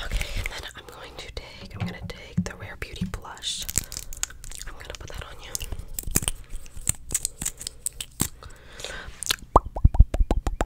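Soft close-miked whispering mixed with many sharp clicks, taps and crinkly rustles of makeup products being handled right at the microphone. A run of quick popping sounds starts near the end.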